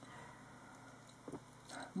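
Near silence: quiet room tone, with one faint short tap a little over a second in.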